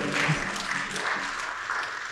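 Congregation applauding: a dense patter of hand claps in a hall that slowly tapers off.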